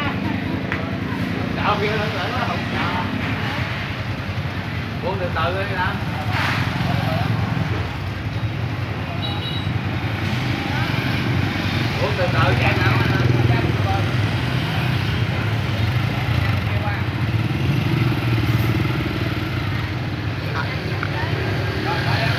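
Yamaha motorcycle engine idling steadily close by, with other motorbikes passing in the street and the sound swelling a little about twelve to fourteen seconds in.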